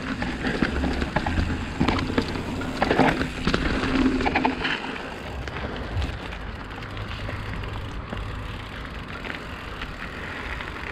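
Hardtail mountain bike rolling over a dirt and gravel path: tyres crunching, the bike rattling over bumps, and wind on the microphone. The clatter is busiest in the first half, then settles into a steadier rolling noise.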